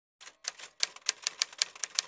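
Typewriter key clicks, a typing sound effect: about a dozen sharp, irregular strikes at roughly six a second.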